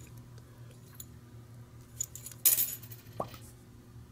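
Aluminium vial seal and rubber stopper being worked off a glass vial by hand: a few faint clicks, a brief scratchy metallic rattle about halfway through, then a short rising squeak as the rubber stopper comes out of the glass neck.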